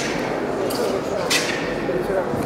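Three sharp snaps of taekwondo uniforms (doboks) cracking as competitors execute pattern techniques, about two-thirds of a second apart, over a steady murmur of chatter in a large echoing hall.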